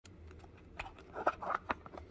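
Cardboard packaging and a boxed action camera being handled: a few light clicks and knocks, with a short scraping rustle in the middle as the camera is gripped and pulled against its cardboard box insert.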